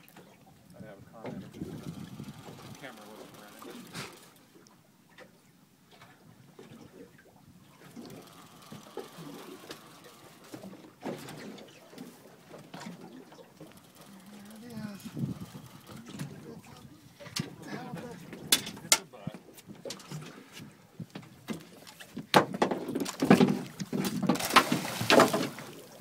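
Indistinct voices on a fishing boat with scattered knocks and clicks from rod handling, growing louder and busier with many knocks over the last four seconds.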